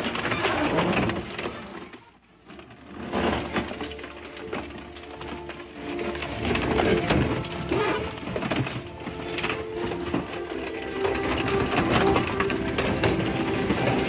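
Industrial shredder's toothed rotors gripping and tearing a car's sheet-metal body: continuous crunching and screeching metal, with a short lull about two seconds in.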